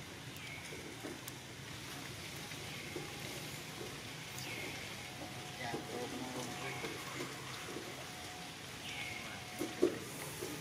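A short high animal call repeated about every two seconds, over faint background voices.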